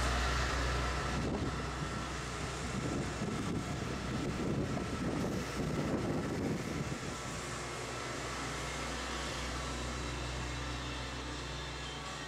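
Steady low rumble and hiss of background ambience with a faint, constant low hum, and no distinct events.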